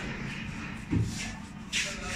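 Cloth rubbing across a car's painted bonnet: short swishing wipes, with a dull thump about a second in.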